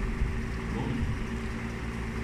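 A steady low hum of room background noise, with no other clear event.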